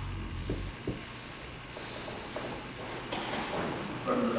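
Two people grappling on a martial arts mat: cotton gi rustling and bodies shifting on the mat, with a couple of soft thumps in the first second, over a steady hiss.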